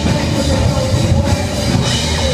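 Amateur rock band playing live: distorted electric guitars over bass and drums, with a held, squealing guitar note running through.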